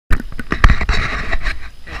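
Handling noise on the camera's microphone: a loud, irregular run of knocks and rustles.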